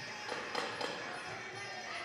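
Fight-arena background: faint music and crowd voices, with a couple of short knocks about half a second and just under a second in.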